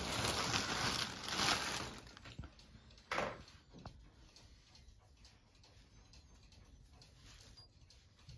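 Plastic bag of polyester fiberfill rustling and crinkling as handfuls are pulled out, loudest for the first two seconds with one more short rustle about three seconds in, then soft rustling as the fiberfill is pushed into a knit sweater.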